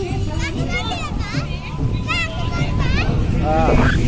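Several shrill, wavering voices calling out, with a rising shout near the end, over a dense low rumble.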